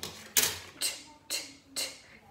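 A woman's voice sounding out the phonics sound 't' four times, short crisp 't' bursts about half a second apart.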